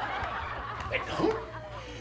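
Audience laughter: many people chuckling and laughing together.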